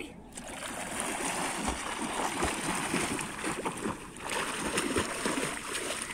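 Water splashing as a swimmer plunges into shallow lake water and thrashes along, churning the surface. The splashing is dense and uneven, with a brief lull about four seconds in.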